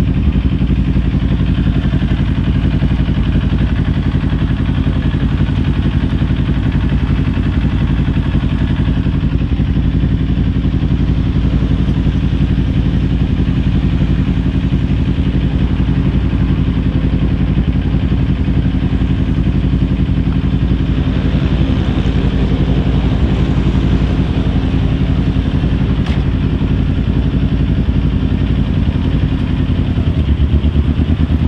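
Kawasaki Ninja 400's parallel-twin engine idling steadily at a constant pitch while the bike is stopped in traffic.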